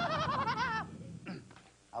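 A high, quavering cry with a fast wobble in pitch over a low rumble, cutting off a little under a second in: a put-on show of alarm, which the performer right after calls just pretending.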